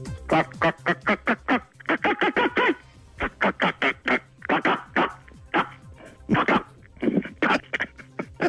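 A man imitating a chicken over the phone: rapid runs of short clucks with a few longer, drawn-out calls, over a radio music bed. Someone laughs about a second in.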